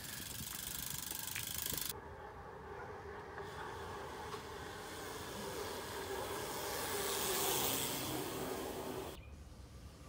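A steady hiss, then after a cut the tyre noise of a bike rolling down an asphalt street toward the camera. It grows louder to a peak about seven and a half seconds in, then cuts off abruptly.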